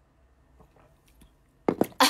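Faint gulping as someone drinks water from a glass, then a quick run of sharp clicks near the end, the loudest thing heard.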